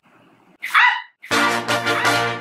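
A single short, high yelp like a small dog's about half a second in, followed from about a second and a half in by background music with a steady beat.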